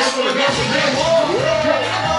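Live hip-hop performance heard through a club PA: a rapper's voice, rising and falling in pitch, over a backing track with a steady bass that drops out briefly near the start.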